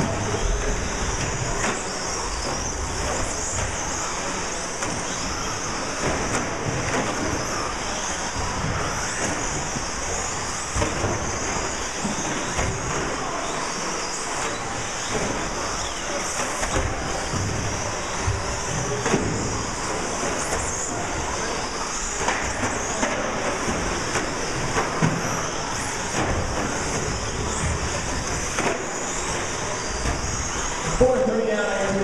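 A pack of electric short-course RC trucks racing on an indoor track: a steady mix of high motor whine and tyre noise, with a few sharp knocks from trucks landing or hitting the track barriers.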